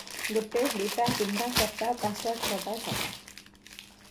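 Wrapper crinkling and rustling in hands for about three seconds, over a girl's short vocal sounds, dying away near the end.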